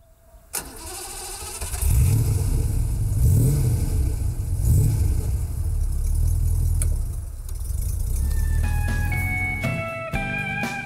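BMW 503's light-alloy V8 starting up and revving a few times, then settling to a steady run. A sharp knock comes about half a second in, and guitar music comes in near the end.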